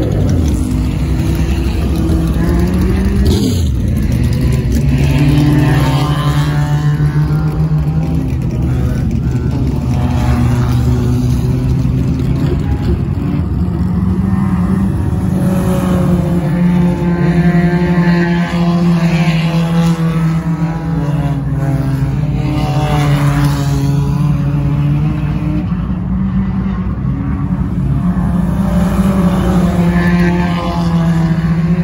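Engines of several stock cars circling a short oval track, passing close by, their pitch rising and falling as they accelerate and ease off through the turns.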